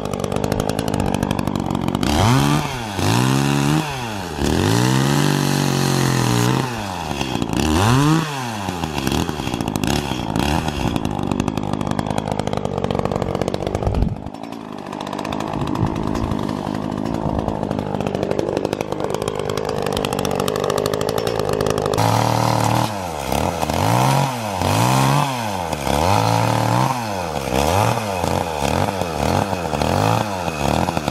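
Two-stroke petrol chainsaw cutting through the trunk of a fir tree, its engine revving up and down again and again as the chain bites. In the middle it runs at a steadier speed before the rise-and-fall revving returns near the end.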